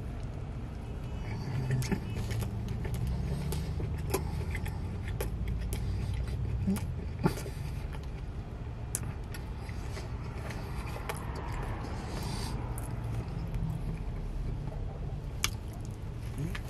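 A man biting and chewing a burger close to the microphone: scattered short wet clicks and crunches over a steady low hum in the car cabin.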